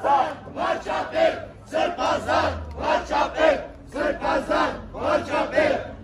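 Crowd of protesters chanting a short slogan in unison, the phrase repeated three times in a steady rhythm.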